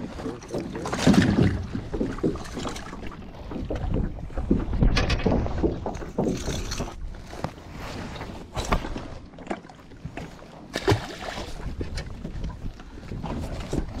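A bass being landed and handled in an aluminum boat: irregular knocks and bumps against the hull, with wind noise on the microphone.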